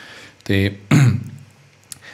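A man clears his throat once, briefly, just after saying a short word into a close microphone.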